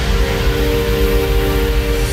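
Trance track playing: a long synth chord held steady over the continuing bass.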